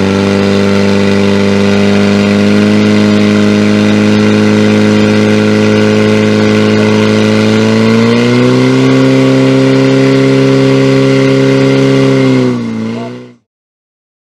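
Portable fire-sport pump with an engine of up to 1500 cc running steadily at high revs while pumping water to the nozzles; its pitch steps up about eight seconds in, then wavers and cuts off near the end.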